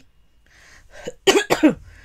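A woman coughs twice in quick succession about a second in, after a short intake of breath.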